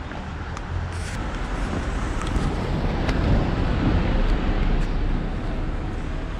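Street traffic: a vehicle passing by, its low rumble swelling to a peak midway and then easing off.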